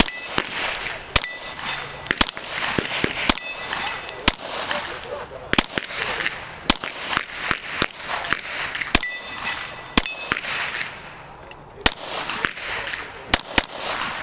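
A string of pistol shots fired at an irregular pace, some quickly paired, with several hits on steel plates ringing out after the shots. The shooting pauses for about a second and a half near the end, then a few more shots follow.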